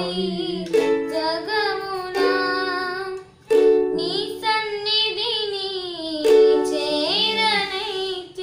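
A child strumming a ukulele and singing along. A fresh chord is struck every few seconds under her sung melody, with a brief pause a little after three seconds.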